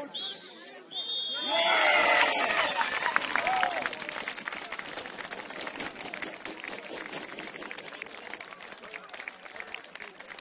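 Referee's whistle: a short peep, then a longer blast about a second in. Shouting and cheering with clapping break out straight after, loudest about two seconds in, then fade to scattered clapping and voices.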